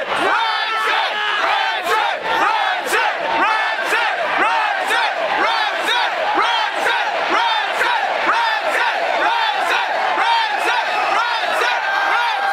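Concert crowd shouting and chanting together, with rhythmic hand claps about twice a second.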